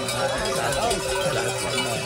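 Many cowbells clanking and ringing on a herd of cattle as they are driven along a road, with voices mixed in.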